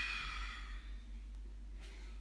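A long, breathy exhale that fades out in the first second, the out-breath that goes with lowering into chaturanga in a yoga sun salutation.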